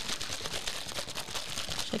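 A sealed cup of brown sugar boba milk tea being shaken in its paper wrapping, the paper crinkling in a fast, continuous rustle. It is shaken to mix in the sugar settled at the bottom.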